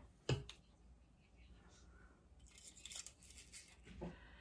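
A single light knock, then faint scratchy scraping of a spoon scooping sandy crumb crust mix and dropping it into paper liners in a mini muffin tin.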